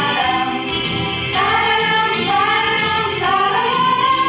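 Women's choir singing in harmony, moving through a phrase and rising to a held note over the last second.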